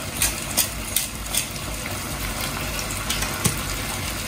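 A frying pan of onion and tomato sauce sizzling steadily on the stove, with short crackles from a hand pepper mill being twisted over it in the first second or so.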